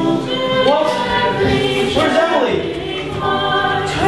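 A choir of voices singing a hymn, holding long notes that change pitch together.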